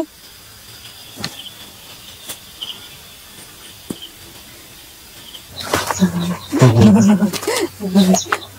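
Quiet night ambience with faint, short insect chirps and a few soft clicks. From about halfway through, people are talking.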